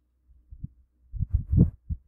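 A series of low, muffled thumps and bumps, a few single ones and then a quick cluster, loudest about a second and a half in.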